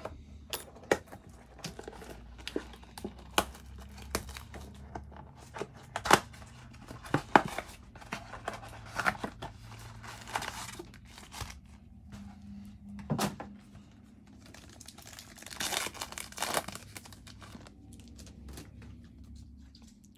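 Plastic wrap and cardboard of a 2019-20 NBA Hoops blaster box torn open by hand, then the foil card packs inside crinkling and ripping as they are opened. It is a string of sharp snaps and crackles, with denser crinkling about ten seconds in and again about sixteen seconds in.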